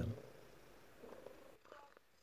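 Domestic cat purring faintly and steadily.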